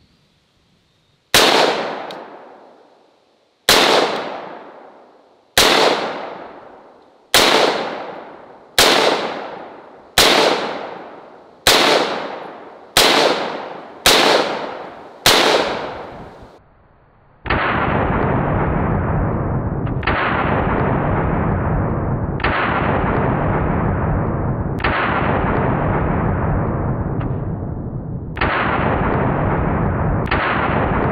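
Ten shots from a 5.56 semi-automatic rifle, fired about one and a half to two seconds apart, each echoing away. A little past halfway this gives way to a continuous, duller low boom that swells again every two to three seconds: the shots' sound slowed down under a slow-motion replay.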